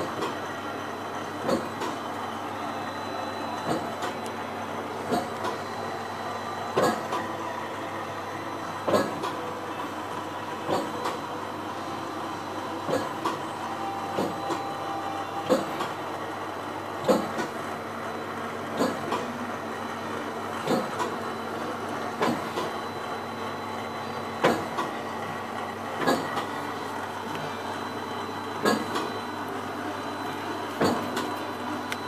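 Shinohara 52 sheetfed offset printing press running, a steady mechanical hum with a sharp clack roughly every one and a half to two seconds.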